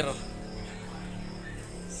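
Crickets chirping steadily, with a low steady hum beneath.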